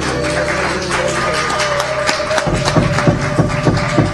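Live jazz band playing: one long held note over quick percussive taps and strokes, with a low bass line coming in about halfway through.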